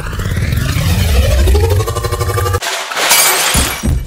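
Edited transition sound effect: sweeping electronic tones over a deep rumble, then a glass-shattering crash about three seconds in.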